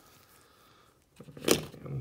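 Faint handling noise, then one sharp click about one and a half seconds in, as a hard plastic coin capsule is set down against the coin display tray.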